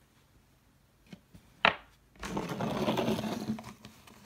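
Hand-handling noise on a wooden workbench: a few small clicks, then one sharp knock about a second and a half in, followed by a second and a half of scraping and rustling as a white cylinder on a metal shaft is picked up and brought in by hand.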